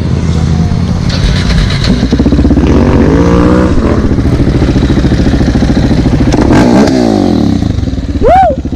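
Motorcycle engine running close to the microphone with a fast, even pulse. Another engine's pitch rises and falls about three seconds in, and again near the seventh second.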